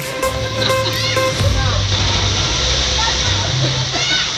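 Steady rushing and splashing of water running down an open water slide into its splash pool as an inner tube with two riders slides down.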